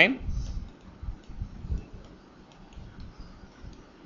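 Faint, scattered clicks and low taps of a stylus writing on a tablet.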